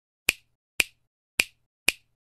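Intro-animation sound effect: four sharp snaps, about half a second apart, timed to letters appearing on screen.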